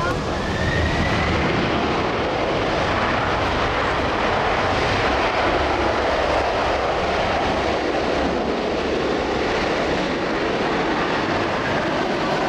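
Boeing 747-400F freighter's four jet engines as it touches down and rolls out on the runway: a loud, steady rushing noise that grows fuller a few seconds in, with a faint rising whine at the start.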